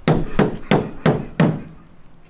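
Four dull thumps on a red Lada's sheet-metal bonnet, as a man crouched on it bounces and presses down. The first three come about a third of a second apart and the fourth after a longer gap.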